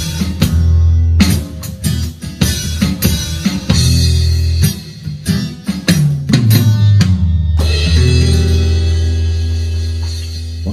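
Acoustic blues played on a Takamine acoustic-electric guitar with an electronic drum kit, through a PA speaker, with strummed chords and drum hits. About six seconds in a falling run leads into a final chord left ringing as the song ends.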